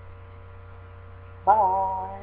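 Steady electrical mains hum on the recording. About one and a half seconds in, a man's voice comes in loudly on one long held vowel.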